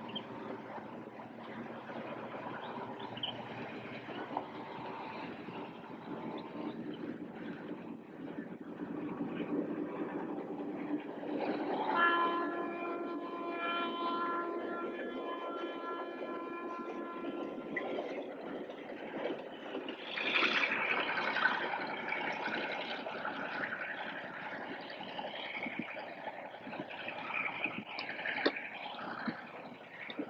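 Diesel locomotive running as the train pulls in, its horn sounding one steady blast of about six seconds near the middle.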